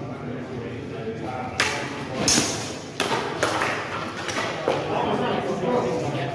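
Spear-and-buckler sparring: about five sharp knocks and clacks as spears strike and are parried on steel bucklers, the loudest about two seconds in.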